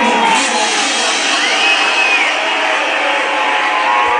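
Loud, steady, distorted wash of a packed club dance floor: DJ dance music and the crowd blended together, with no clear beat or voice standing out.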